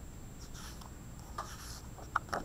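Paper rustling softly as a hardcover picture book's page is gripped and starts to turn, in a couple of brief scrapes.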